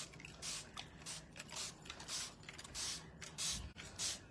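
Hand spray bottle spritzing water onto an IOD paint inlay's backing sheet: about six short hissing puffs of mist, roughly two a second, wetting the sheet so it can be peeled off.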